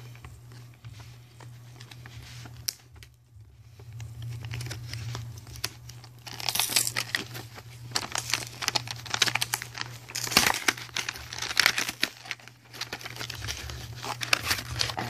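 Plastic wrapping being torn and crinkled off a trading-card starter deck box, in irregular crackling rustles that grow louder and busier about halfway through. A steady low hum runs underneath.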